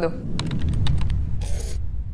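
Transition sound effect for a logo card: a low bass rumble with a quick run of sharp clicks in the first second, then a short hiss about a second and a half in.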